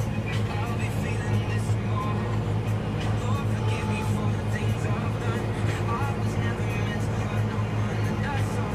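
Valtra N111 tractor's diesel engine running steadily under load while mowing grass, a constant low drone.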